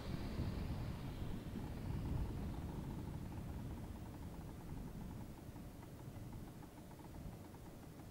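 Piper J-3 Cub's engine at low power, heard from a distance as the plane lands on grass and rolls away: a low drone that gradually fades.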